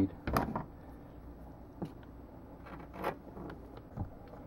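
Scissors cutting a thin sheet of dried liquid latex, a few short snips about a second apart.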